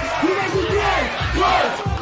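Freestyle rap battle audio: a hip-hop beat with regular bass hits under loud shouting voices from the MCs and the crowd.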